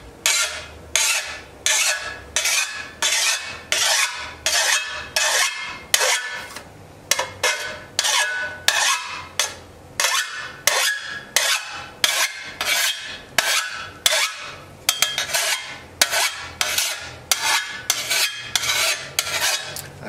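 Six-inch hand file rasping along the edge of a metal shovel blade in quick strokes, about two a second, with a short break about seven seconds in: sharpening the shovel's bevelled edge.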